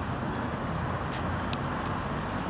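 Steady outdoor street noise: a low rumble of road traffic with wind on the microphone.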